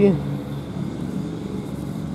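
Steady low hum of outdoor background noise, with the tail of a spoken word at the very start.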